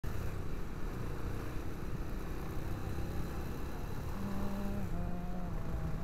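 Motorcycle being ridden, heard from the rider's own camera: a steady rush of engine and road noise, with a steady engine note standing out in the second half and dropping slightly about five seconds in.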